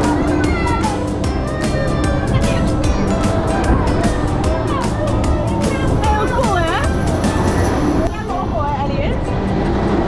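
Rumble and rushing air of a spinning amusement-park ride, heard from an open gondola, with music playing. Riders call out twice, about six and eight seconds in.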